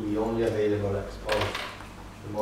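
An audience member's voice asking a question, heard away from the microphone.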